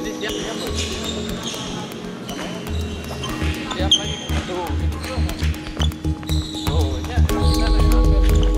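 Background music with a pulsing low beat, over many sharp hits of badminton rackets striking shuttlecocks and shoes on a hall floor, echoing in a large hall, with brief indistinct voices.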